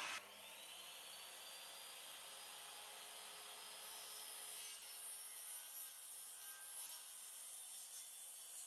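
Faint sounds of carpenters handling timber framing: wood rubbing and scraping. A louder noise cuts off abruptly right at the start.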